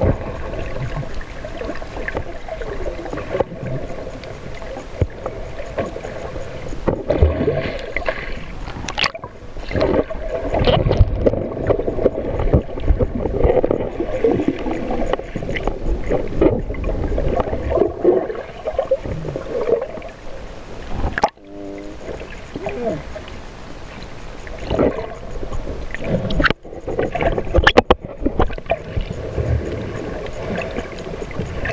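Water sloshing and gurgling around a camera filming underwater, an uneven wash that dips out suddenly a couple of times.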